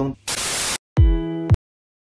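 Video-editing transition sound effect: a loud half-second burst of TV-style static hiss, a short break, then a half-second buzzy electronic tone that cuts off abruptly, leaving dead silence.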